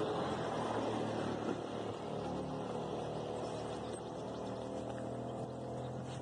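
A motor vehicle's engine running steadily, a low even hum with road or traffic noise.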